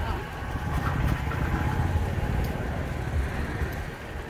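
Low, uneven outdoor rumble of background noise, with faint voices in it.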